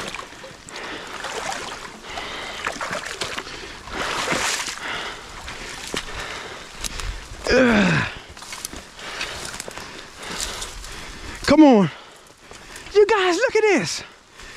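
Footsteps sloshing and rustling through wet, flooded leaf litter and brush, with light rain falling. A man's voice breaks in briefly a few times with short falling exclamations, about halfway through and near the end.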